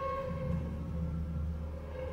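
Contemporary chamber music for oboe, violin and percussion: a held high note over a low drum rumble that starts with the window, swells and fades out near the end.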